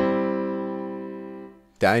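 A C major chord played on a piano-like software keyboard instrument, one of three inversions of the same chord, ringing and fading away over about a second and a half before it stops.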